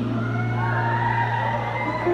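Concert audience cheering and screaming, over a steady held low note from the band.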